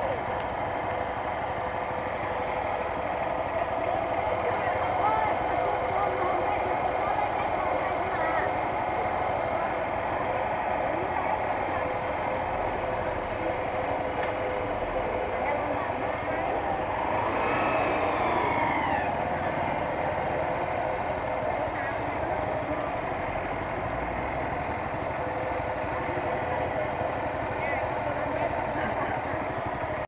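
Small motorcycle engine idling at a standstill amid street noise and indistinct voices. A brief louder passing-traffic sound rises and fades a little past the middle.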